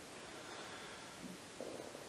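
A quiet pause in speech: steady recording hiss and room tone, with a faint low sound about halfway through and again near the end.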